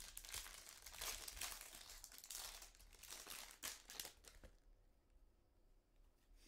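Foil trading-card pack being torn open and crinkled by hand: a quick run of crackling and tearing that stops about four and a half seconds in.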